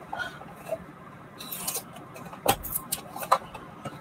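A small cardboard box being torn open by hand: faint scratching and rustling of the packaging, with two sharp clicks in the second half.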